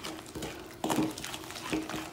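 Wooden spoon stirring thick, wet cake mixture in a glass bowl: soft squelching with a few short scrapes and knocks against the glass, as beaten egg is worked into the creamed mixture.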